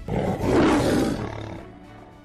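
A logo-sting sound effect over outro music: a loud rushing whoosh swells up right at the start and fades away over about a second and a half, with sustained music tones underneath.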